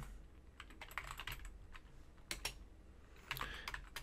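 Faint, irregular keystroke clicks of someone typing on a computer keyboard.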